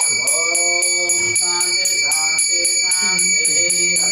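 A small metal hand bell rung steadily and rapidly, about five strokes a second, as in a Hindu puja, with a voice singing along underneath.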